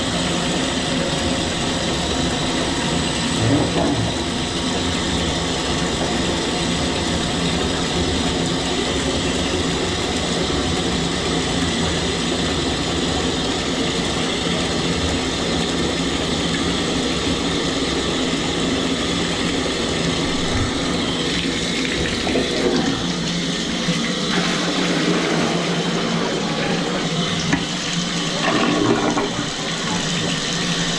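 Steady rush of water in a backed-up bathtub and toilet drain, with a steady hum under it; the deeper part of the sound drops away about two-thirds of the way through.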